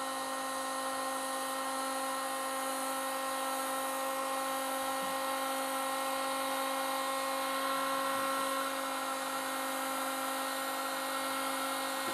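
Black & Decker electric heat gun running steadily: a constant motor whine over a rush of air, blowing hot air onto a clamped Lexan sheet to soften it for bending.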